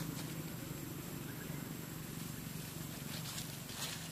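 A steady low hum, with a few faint rustles of a baby macaque stepping through grass and dry leaves, clearest near the end.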